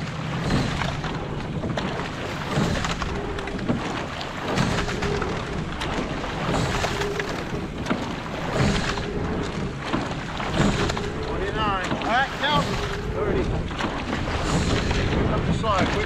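Rowing quad scull at a high stroke rate, with a surge of oar and water noise about every two seconds as the blades work the water and the hull runs on. Wind on the microphone runs underneath.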